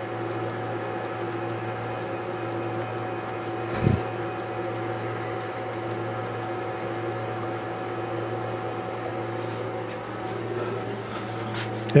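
Anolex 3020 desktop CNC router jogging its bed forward under the stepper motors: a steady motor hum with fixed tones, with one short knock about four seconds in.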